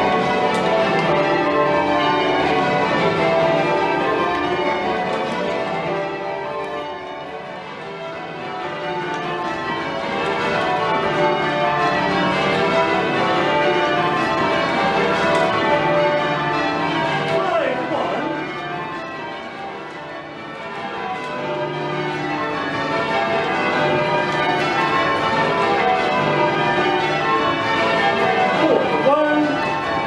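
Ring of Whitechapel-cast church bells rung full-circle by hand, heard from the ringing chamber below: many bells strike in rapid, overlapping succession. The sound dips in loudness twice, about a third of the way in and again after two-thirds.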